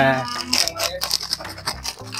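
Crinkly plastic snack packet rustling and crackling as it is handled and opened, a quick irregular run of crackles that starts about half a second in.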